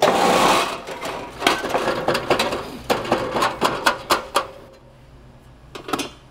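Soil sample poured through a metal riffle splitter into metal pans. A loud rush of grains at the start gives way to a quick run of clicks and rattles of small stones on sheet metal, which dies away about four and a half seconds in.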